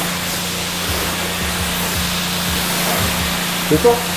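High-pressure wash wand spraying water onto a car's hood: a steady, even hiss with a low hum under it.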